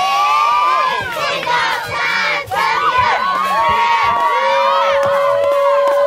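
A squad of nine-year-old girl cheerleaders yelling a cheer together, many high voices at once, with long drawn-out shouts held for several seconds.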